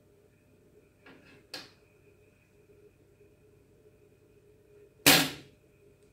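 Quiet handling of thread and a wire bead loom: two faint soft sounds a little after a second in, then one short, loud noise about five seconds in as the loom is moved.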